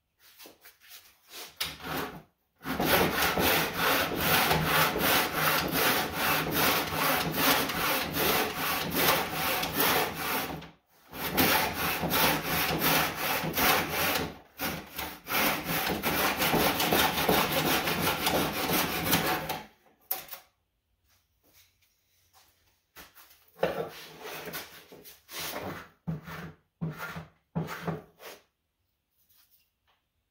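Hand backsaw in a miter box cutting 45-degree miters across the end of a wooden board. It goes in rapid back-and-forth strokes, in three long runs with short pauses between them. Near the end come a few quieter, scattered knocks and handling sounds.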